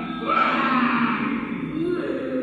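Soundtrack of an animated children's story playing back in a room: long pitched tones that glide up and down, with no words.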